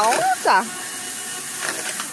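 Motorized drum mixer turning a batch of potting soil: its paddle arms churn the granular mix with a steady, even rushing noise. A brief voice is heard at the start.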